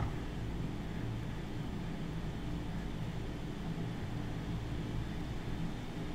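Computer cooling fan running steadily at high speed under heavy processing load while a particle effect renders to RAM, a low, even hum with a few faint steady tones.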